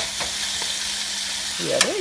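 Frozen shrimp sizzling in a hot frying pan, a steady hiss, with a sharp click of metal tongs against the pan at the start and again near the end.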